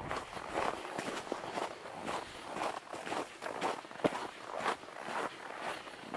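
Footsteps on a snow-covered forest path, walking at an even pace of about two steps a second.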